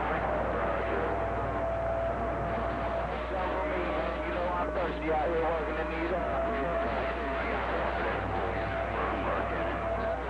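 Incoming signal from a Yaesu FT-2000D transceiver's speaker: a strong station's garbled radio voices, with a steady whistle that comes and goes, over a constant low hum.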